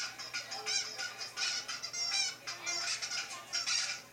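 Several children blowing plastic toy horns, a jumble of short, high-pitched honks overlapping one after another.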